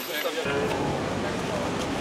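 Indistinct voices of several people talking in the background, over a steady hiss of outdoor noise. There is a short drop-out at the very start.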